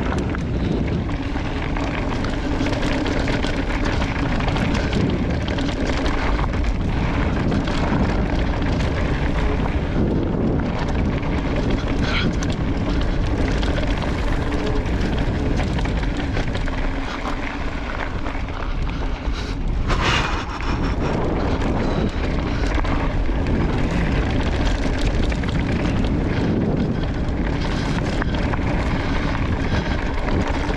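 Wind rushing over the microphone and tyre noise on hard-packed dirt as a Specialized Levo electric mountain bike rolls along singletrack, a steady drone throughout. A brief loud clatter about twenty seconds in.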